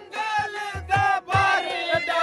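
Loud Saraiki jhumar dance music: a wavering reed melody over regular dhol drum beats, with men of the dancing crowd shouting along.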